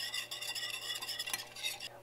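Wire whisk stirring a thin milk-based pepper sauce in a stainless steel saucepan, a steady quick scraping and ticking of the wires against the metal pan.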